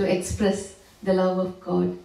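Speech only: a woman talking into a handheld microphone in short phrases.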